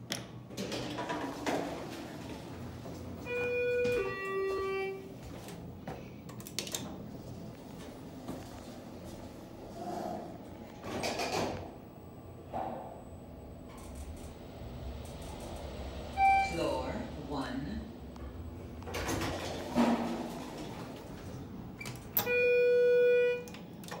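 Schindler 400AE elevator: a two-note falling chime a few seconds in as the car answers the down call, then door and car running noises, a short beep later on, and a longer steady beep near the end.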